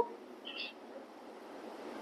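Faint room tone during a pause in speech, with one brief soft high hiss about half a second in.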